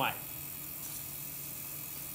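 Electric potter's wheel running, its motor giving a steady low hum.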